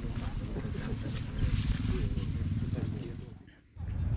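Indistinct voices of several people talking over a steady low rumble. The sound cuts out abruptly about three and a half seconds in, then resumes.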